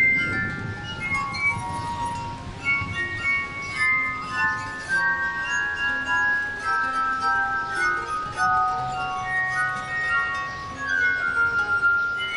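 Glass harp: a set of wine glasses tuned with water, played by rubbing their rims with fingertips, sounding long, pure ringing notes that overlap in a slow melody. Lower held tones join underneath in the second half.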